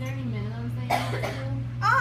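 A woman talking, with a single cough about a second in, over a steady low hum.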